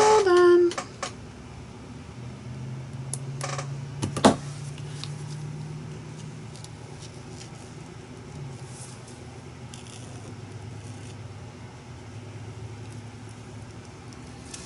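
A low, steady rumble runs under the window, with a sharp knock about four seconds in. Later come faint scratchy strokes of a paint marker on a paper tag.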